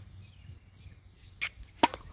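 Tennis serve: a brief swishy noise, then a moment later the single sharp crack of the racket striking the ball near the end, the loudest sound.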